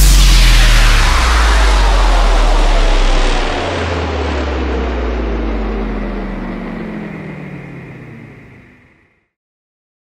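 A deep cinematic boom from the show's soundtrack, running on as a long low rumbling drone with a hiss over it. The bass tone shifts up about three and a half seconds in, and the whole sound slowly fades out, gone by about nine seconds in.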